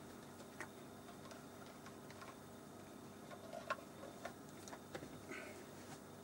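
Quiet room with a faint steady hum and a handful of soft, scattered clicks and knocks from someone shifting about in a seat.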